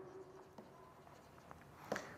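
Faint scratching of a stylus writing on a tablet, with a couple of light taps.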